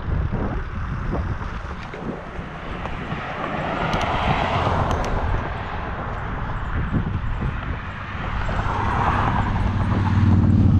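Wind rushing over the microphone of a moving bicycle, with road traffic noise that swells twice, around four seconds in and again near the end, as vehicles pass.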